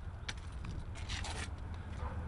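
Faint scraping and rubbing from a handheld camera being carried, over a steady low rumble, with a short scratchy patch about a second in.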